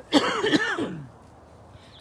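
A man clearing his throat: one rough burst just under a second long near the start.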